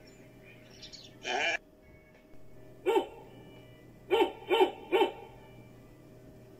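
Sheep bleating from a ewe with newborn lambs: one longer bleat about a second in, a short bleat near the middle, then three short bleats in quick succession near the end.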